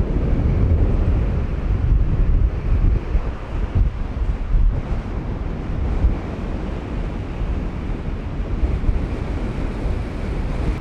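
Strong wind of about 25 knots buffeting the microphone in gusts, heaviest over the first half, with surf breaking on the beach.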